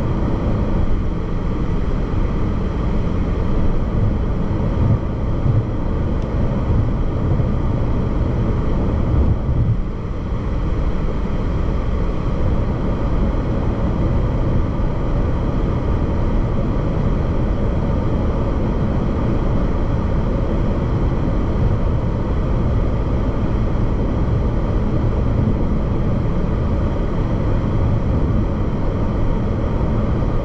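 Steady road noise of a car cruising at highway speed, heard from inside the cabin: a low tyre-and-engine rumble with an even hiss above it.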